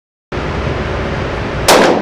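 A single .410 shot from a Smith & Wesson Governor revolver firing a Hornady Critical Defense shell, with a ringing decay off the walls of an indoor range. It comes about three-quarters of the way in. Before it, a steady noise starts abruptly after a brief silence.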